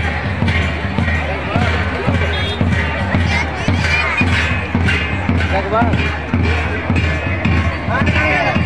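Large folk drum beating a steady dance rhythm of about two strokes a second, over the chatter of a large crowd.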